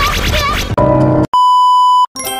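Remixed song with quick, chirpy sped-up singing, ending about three-quarters of a second in with a short held chord. After a brief break comes a loud, steady test-tone beep, the kind played with TV colour bars, lasting most of the last second.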